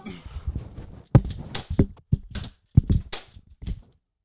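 Irregular knocks, clicks and rustles from handling a handheld microphone and a toy revolver. About nine short thumps fall in the last three seconds as the revolver is handled, as if being loaded.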